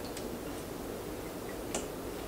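Small clicks from handling the front brake caliper's bleeder fitting and hose, a faint one just after the start and a sharper one near the end, over quiet room tone.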